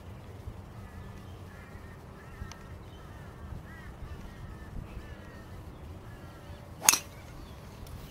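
A driver strikes a golf ball off the tee: one sharp, loud crack about seven seconds in. Before it a bird calls faintly several times.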